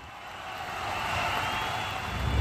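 Edited intro sound effect: a swelling rush of noise, like a whoosh or riser, with a faint high tone gliding slightly upward.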